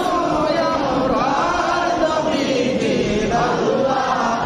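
Male devotional chanting of a milad, the Islamic recitation in praise of the Prophet Muhammad. The voices sing a sustained, wavering melodic line without a break.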